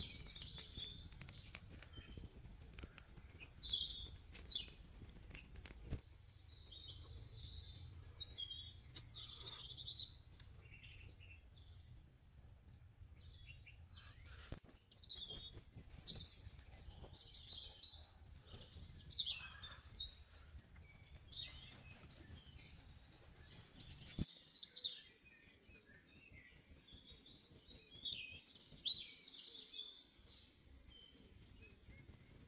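Small birds chirping, with many short high calls and trills scattered throughout, over a low steady background rumble that drops away about three quarters of the way through.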